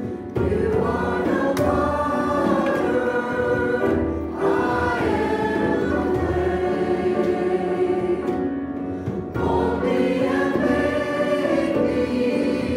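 A church congregation and worship team singing a worship song together in sustained phrases, with brief breaks between lines about four and nine seconds in.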